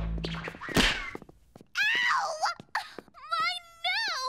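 Wordless vocal sounds from a cartoon character's voice: a drawn-out moan with falling and rising pitch about two seconds in, and a shorter, higher one near the end. Just before them, about a second in, comes a brief thud-like burst.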